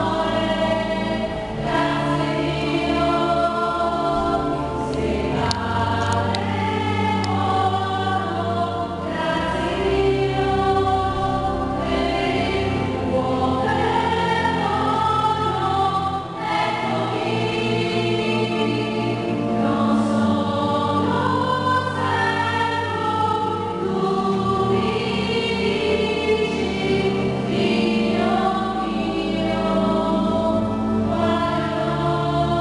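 Church choir singing a Communion hymn over sustained low accompanying notes.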